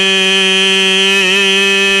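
A man's voice holding one long, steady chanted note at the end of a sung line of Gurbani, with a slight waver about a second in.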